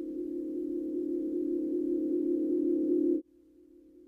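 A low, steady droning tone of a few notes held together, growing louder, then cut off abruptly about three seconds in before coming back quietly and swelling again.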